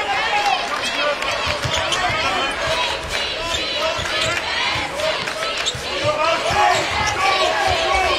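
Basketball being dribbled on a hardwood arena court, with repeated bounces, sneakers squeaking as players cut, and a steady crowd murmur in the big arena behind.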